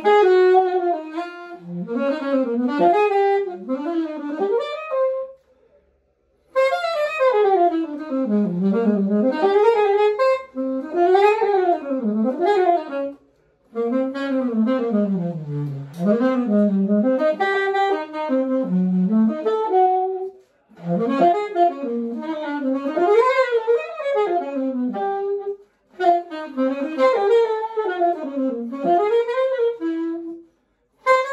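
Solo saxophone playing a melody with no accompaniment, in flowing phrases that rise and fall, broken by four short pauses for breath.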